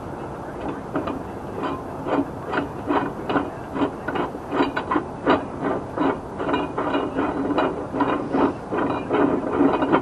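Steel parts of a manual tire changer clicking and creaking as it is worked by hand, a steady run of irregular metal clicks, several a second.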